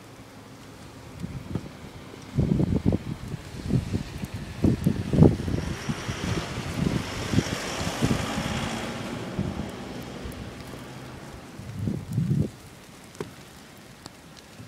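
Wind buffeting a phone's microphone in irregular low gusts, with a broader rushing noise that swells and fades in the middle.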